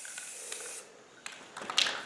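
Aerosol spray paint hissing as it is sprayed onto a plastic coffee can, cutting off just under a second in; a few clicks and one short spray follow near the end.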